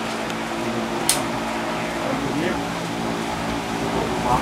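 Steady hum of an electric pedestal fan, with one short high click about a second in.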